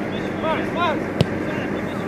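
Two short shouted calls from players, then a single sharp thud of a football being kicked a little over a second in, over a steady background hiss.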